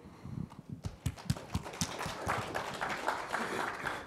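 An audience clapping in welcome: scattered claps at first that fill in to steady applause.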